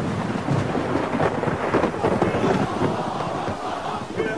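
A dense, rumbling, crackling noise like a storm, a sound effect opening a recorded song. It comes in suddenly, loud, and runs on steadily.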